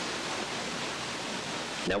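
Steady hiss of background noise in a pause between sentences, with a man's voice starting a word right at the end.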